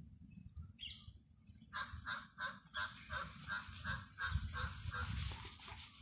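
A bird calling in a rapid series of short notes, about four or five a second, starting a little under two seconds in, over a low rumble.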